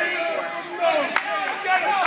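Spectators' voices shouting and calling over one another at a wrestling match, with one sharp smack about a second in.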